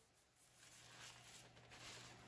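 Faint rustling of the stroller seat's fabric and recline strap being handled, growing slightly louder near the end.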